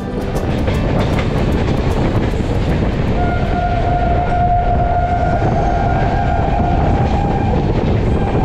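Indian Railways Rajdhani Express running at speed, heard from beside a coach: a steady loud rumble of wheels on the rails. About three seconds in, a single steady horn blast starts and is held for about five seconds.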